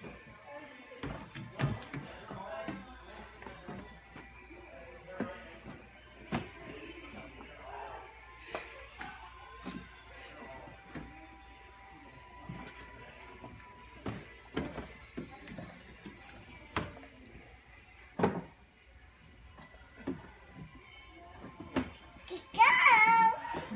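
Background music and faint voices, with scattered knocks and clicks of a child handling plastic ride-on toy cars and their doors.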